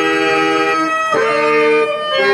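A singer holds long, drawn-out notes of a Telugu stage-drama padyam over instrumental accompaniment, breaking off and moving to a new held note about a second in.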